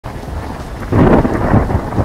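Thunderclap sound effect: a steady rain-like hiss with a loud rumbling crash about a second in.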